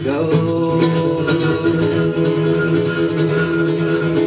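Acoustic guitar strummed in a live folk-punk song, chords ringing steadily between sung lines.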